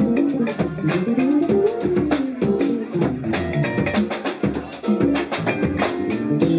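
Live band playing: an electric bass plays a melodic line with a sliding phrase, over a drum kit keeping a steady beat with cymbal hits.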